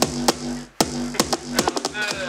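Electronic dance track playing: sharp, clicky drum-machine hits in a quick, uneven rhythm over a held synth bass note that pulses on and off.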